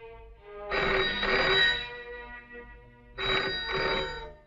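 A telephone bell ringing twice, each ring a quick double burst, the first about a second in and the second near the end, over faint background music.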